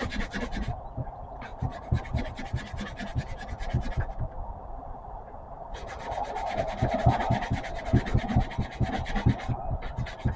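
A sanding block rubbing rapidly back and forth over the tip of a wooden dowel, taking the sharpness off and lengthening the point of a homemade tapestry needle. Runs of quick scratchy strokes, pausing briefly just under a second in and for about two seconds around the middle.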